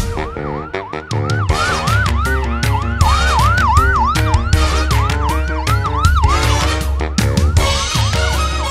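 Ambulance siren sweeping rapidly up and down, about three cycles a second, over the song's instrumental backing with a steady beat. The siren breaks off briefly near the end, then starts again.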